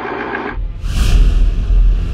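Film-countdown sound effect: the whirring projector-style noise cuts off about half a second in. A whoosh follows, then music with a deep bass rumble begins.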